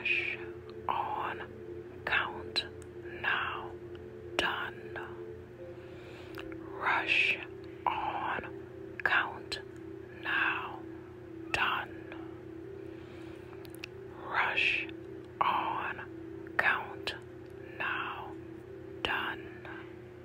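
A whispered voice repeats the switchword chant 'rush on count now done' over and over, in short bursts about a second apart. Underneath is a steady droning tone that shifts slightly about five or six seconds in.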